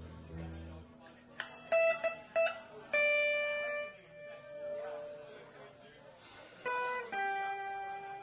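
Live band music: a lead instrument plays a phrase of a few short notes, then long held notes, over soft electric guitar and keyboard accompaniment.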